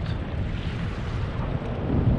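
Wind buffeting the microphone in a steady low rumble, over the wash of sea water along a kayak's hull.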